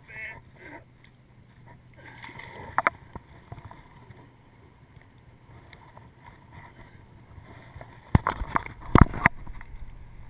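Water lapping against a kayak's hull, with a pair of sharp clicks about three seconds in and a quick cluster of loud knocks near the end from handling gear on the kayak.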